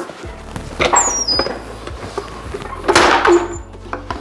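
Background music with a low steady drone, over the handling of a vinyl plank in a lever-style plank cutter: a few light clicks and knocks, then a louder scraping squeak about three seconds in.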